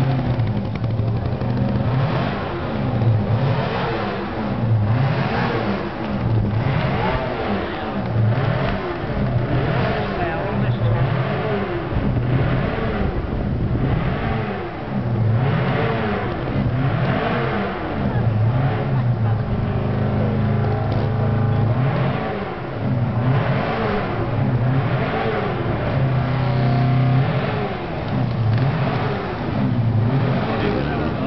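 Trials motorcycle engine revved over and over in short bursts, its pitch rising and falling every second or two.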